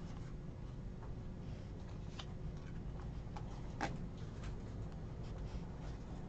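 Panini Donruss basketball trading cards being flipped through by hand: card stock sliding and flicking against the stack in faint, scattered clicks, with one sharper snap about four seconds in, over a steady low hum.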